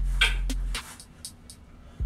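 Hands handling the LED strip controller and its cables: a short rustle and a click. A steady low electrical hum runs underneath, then cuts out abruptly about a second in and leaves it much quieter.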